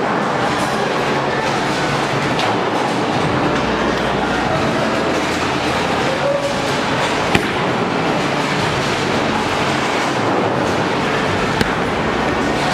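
Bowling alley din: bowling balls rolling and rumbling down the lanes, a steady noise with one sharp knock about seven seconds in.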